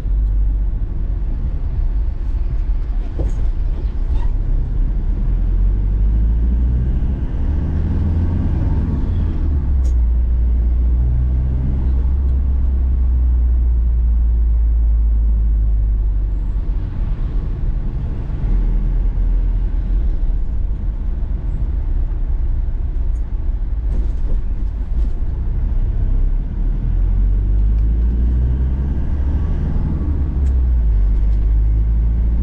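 Troller 4x4 being driven, heard from inside the cabin: a steady low engine and road drone whose pitch shifts a few times as the speed changes.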